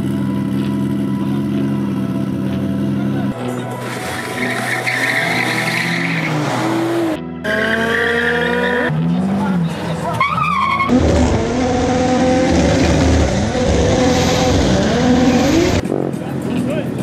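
Drag-race car engines revving, their pitch rising and falling, with tires squealing through burnouts, in several quick cuts. From about eleven seconds in the engine and tire noise gets louder and fuller.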